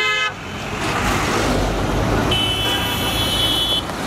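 Road traffic with vehicle horns: a horn cuts off just after the start, a passing vehicle's engine rumbles low, then a high-pitched horn sounds for about a second and a half near the end.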